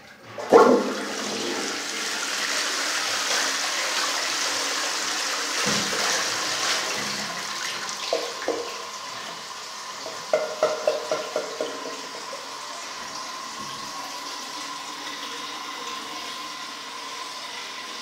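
Wall-mounted Armitage Shanks Melrose toilet flushing: a sharp clunk as the flush goes off about half a second in, then a rush of water through the bowl for several seconds. Short gurgles follow near the middle as the bowl empties, and it settles into a steadier, quieter hiss of water with a faint whine.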